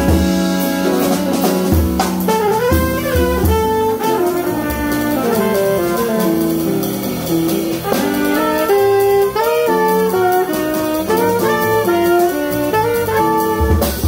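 Live jazz: trumpet and saxophone playing a melody together over drum kit and keyboard accompaniment.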